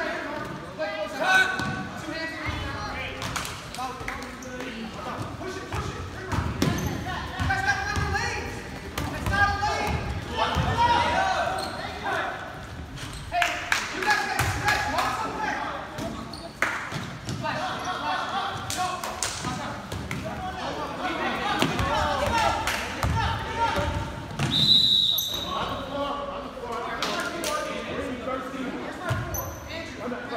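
Basketball game in a gym: a ball bouncing on the court floor among sneaker impacts, with players and spectators calling out, all echoing in the large hall. A short high-pitched tone sounds about five seconds before the end.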